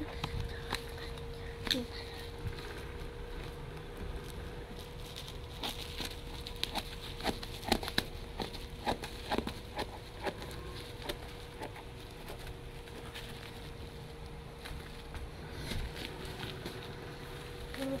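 Plastic bubble-wrap packaging being handled and pulled open, giving scattered crackles and clicks that cluster in the middle, over a steady thin hum.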